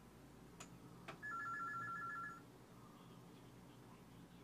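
A quiet electronic telephone ring: a rapid two-tone warbling trill lasting about a second, starting a little over a second in. Two faint clicks come just before it.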